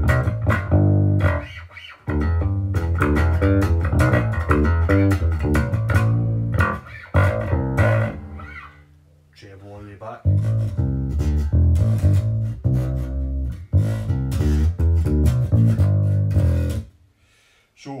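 Cort Curbow 4 electric bass played through a bass amp with its switch in passive mode: a run of plucked notes that thins out briefly about halfway, picks up again, and stops just before the end.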